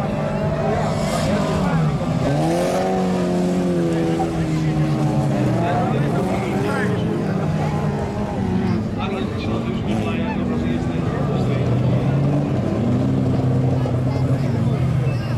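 Engines of old saloon race cars on a dirt track, running hard, their pitch rising and falling again and again as they accelerate and lift off around the circuit.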